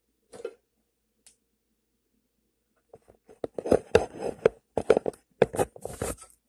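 The recording phone picked up and handled close to its microphone: a single faint tap near the start, then about three seconds in a quick run of loud knocks and rubbing.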